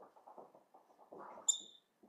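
Marker writing on a whiteboard: faint short scratchy strokes, with one brief high squeak of the marker tip about one and a half seconds in.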